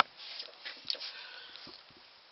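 A single sharp click, then faint rustling and shuffling as a person moves about holding drumsticks.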